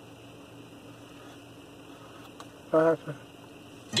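Car radio turned right down with the volume knob: a faint steady hum in the cabin, broken once by a brief snatch of a voice from the speakers a little under three seconds in.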